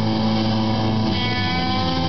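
Rock band playing live, electric guitars and bass holding long sustained notes.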